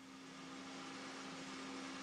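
Faint, steady machinery hum: an even hiss with a single low steady tone, fading in and rising slightly.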